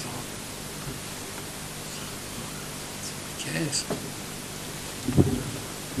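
Steady hiss of the recording's background noise, with a few short bits of a man's voice about halfway through and again near the end.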